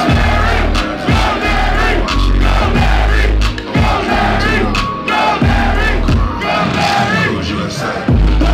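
Live hip hop track played loud through a club PA, with heavy repeating bass, and a crowd of fans shouting along over it.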